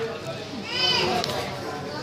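Voices chattering in the background, with a child's high-pitched call that rises and falls about a second in.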